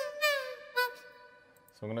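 A melodic sample played from the Output Arcade software instrument, pitched up an octave: a held note, then a note sliding down in pitch and a short third note, ringing out and fading. A voice starts near the end.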